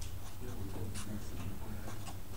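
Felt-tip marker writing on paper in a run of short strokes, over a low steady hum.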